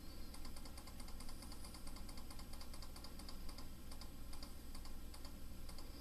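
Faint, rapid, irregular clicking of computer controls, several clicks a second, over a low steady hum.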